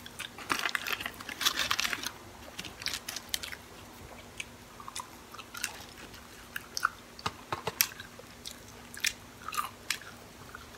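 Close-miked chewing of Burger King French fries: wet mouth clicks and soft crunches in irregular bursts, densest in the first two seconds, thinning out in the middle and picking up again near the end.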